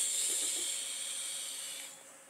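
Long drag on a pen-style e-cigarette: a steady airy hiss of air drawn through the atomizer over the firing coil, slowly fading and stopping just before the end.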